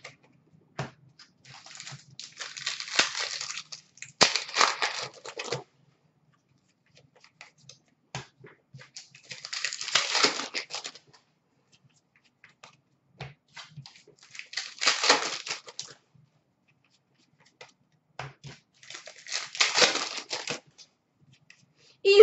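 Trading cards being handled and flipped through by hand: four bursts of paper rustle a few seconds apart, each lasting one to three seconds, with light clicks of card against card in between.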